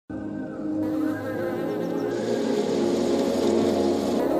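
Honeybees buzzing steadily over opening background music, both starting abruptly at the very beginning.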